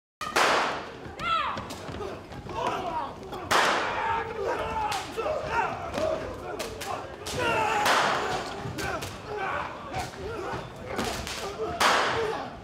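A staged stunt fight: heavy thuds and slams of bodies and furniture being hit, with the biggest hits at the start, twice in the middle and again at the end. Overlapping shouts and cries from several people run under the hits.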